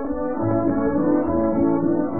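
Instrumental passage of a 1940s dance-band waltz, brass prominent, played back from an old 78 rpm shellac record with a narrow, muffled sound lacking any treble.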